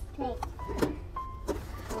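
Pages of a cardboard pop-up board book being turned and handled, with a few soft taps and rustles, over a steady low hum. Two short beeps sound in the middle.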